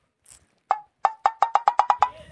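Wood-block sound effect: one knock, then a quick run of about nine knocks at the same pitch that speed up.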